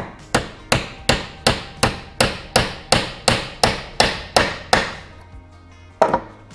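Claw hammer tapping a soft leftover rivet out of a steel bracket held over bench vise jaws: about fourteen sharp, even strikes, nearly three a second, stopping about five seconds in.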